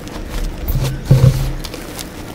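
Hands squeezing and raking loose powdered gym chalk, which crunches in uneven strokes. The loudest and deepest crunch comes just after a second in.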